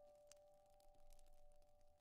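Near silence: the faint tail of one held piano note in the background music, fading away.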